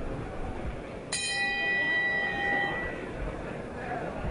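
Boxing ring bell struck once about a second in, its ringing fading over about two seconds: the signal for the start of the third round.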